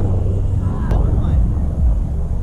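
Wind buffeting an outdoor microphone, a heavy uneven low rumble, with faint distant voices and a single sharp tap a little before the middle.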